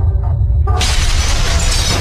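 Logo-sting sound effect: a deep, steady bass rumble, then about three-quarters of a second in a sudden loud crash of shattering debris that keeps going, laid over music.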